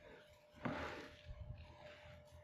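Faint rustle of chicken-coop compost sliding out of a tipped garden cart onto cardboard, starting a little over half a second in, followed by a few light knocks.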